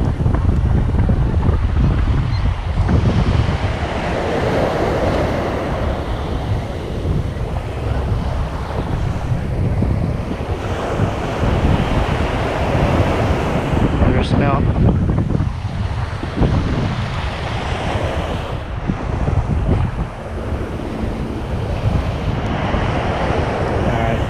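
Small ocean waves breaking and washing up a sandy beach close by, the surf swelling and easing every several seconds, with wind buffeting the microphone as a low rumble. A brief high squeak sounds about halfway through.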